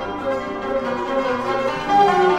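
Cantonese instrumental music played by a traditional Chinese ensemble: a flowing melody of many short notes, with ringing plucked or struck strings.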